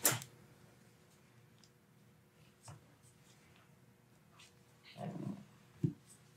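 A sharp crack right at the start as a wrist joint is adjusted by hand, a chiropractic joint pop. It is followed by quiet room tone with a faint click, a brief low rustle about five seconds in and a short knock just before the end.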